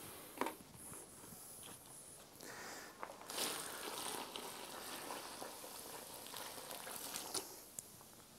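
Water poured from a plastic bucket into a hollow in a pile of dry soil, a steady soft splashing and gurgling that starts about three seconds in and stops shortly before the end.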